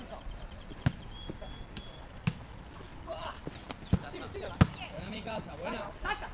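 Football kicked four times during play, sharp knocks a second or so apart, the last the loudest, among players' distant shouts.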